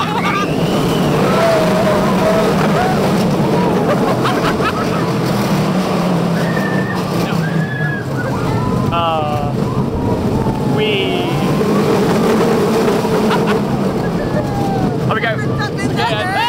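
On board a moving roller coaster: the steady rumble of the train running along the track with wind on the microphone, and riders' voices shrieking and calling out now and then.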